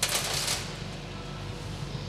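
A bunch of keys jangling and clinking on the metal top of a Sanyo laboratory incubator for about half a second. A low steady hum runs underneath.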